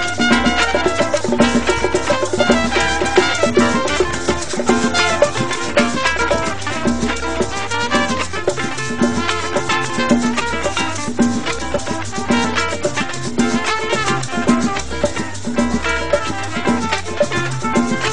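Instrumental passage of a Latin dance-band song, with drums and percussion, bass and melody instruments playing a steady, driving beat and no singing.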